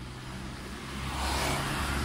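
Road traffic: a passing vehicle's noise swells over the second second, over a steady low hum.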